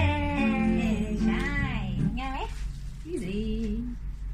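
A young girl singing a slow, wavering melody line over steady backing music; her phrase bends up and breaks off a little over two seconds in. A shorter, softer vocal phrase follows near the end.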